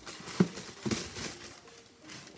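Tissue paper rustling and crinkling as it is pulled back inside a cardboard shoebox, with a sharp knock about half a second in as the box is handled.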